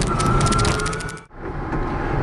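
Cabin noise of a small Jiayuan electric microcar on the move: loud rumble of the road with rattles and knocks from the body and a steady, slightly rising whine. It fades out about a second in and gives way to steadier driving noise in the same car.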